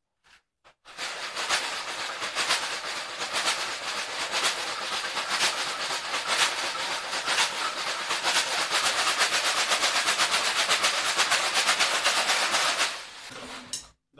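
Homemade shaker made of clear plastic bottles filled with plastic bits, pasta and glass, shaken rhythmically: a dense rattling hiss that starts about a second in, the shakes coming quicker and more even in the second half, and stops shortly before the end.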